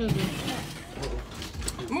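Electric snow cone maker running and shaving ice, with an irregular rattle and clicking of ice in the mechanism.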